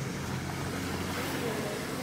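A motor vehicle's engine running nearby with a steady low hum.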